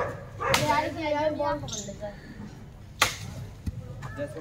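A large black dog gives one drawn-out, wavering whine-bark lasting about a second, followed about three seconds in by a single sharp crack.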